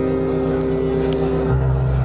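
Electronic keyboard holding a sustained chord, the closing chord of a song, with the bass note moving lower about one and a half seconds in.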